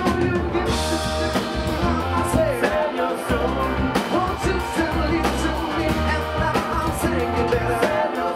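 Live rock band playing: electric guitar, electric bass, drum kit and keyboard, with a man singing lead.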